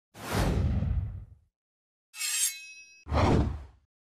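Intro logo sound effects: a whoosh, then about two seconds in a bright shimmering hit whose ringing tones fade, then a second whoosh.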